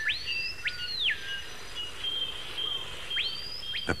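Forest ambience: a bird gives two whistled calls about three seconds apart, each sweeping up quickly, holding high and then dropping, over steady high-pitched insect trilling.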